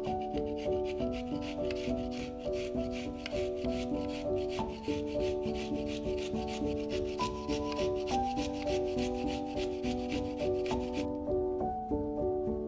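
A garlic clove grated quickly on a small stainless-steel box grater: a rapid run of scraping rasps that stops about a second before the end. Background music plays underneath.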